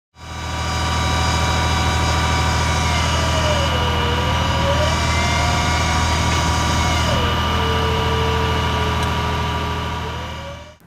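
Truck-mounted crane's diesel engine running steadily, fading in at the start, with a thinner whine above it that dips and rises in pitch a few times.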